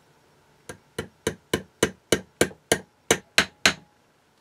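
A small hammer tapping a round-headed pin through a brass plaque into a wooden base: eleven quick, even taps at about three and a half a second, starting under a second in and getting louder as the pin goes home.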